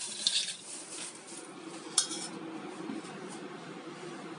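Light clatter of kitchen dishes and cookware, with one sharp clink about two seconds in.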